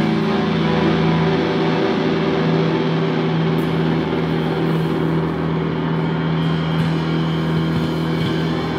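Amplified electric guitars ringing out in a steady drone: several held tones over a wash of amp noise, with no beat.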